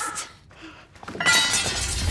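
A brief lull, then about a second in a sudden loud crash of something breaking, with a rattling, ringing tail that carries on to the end.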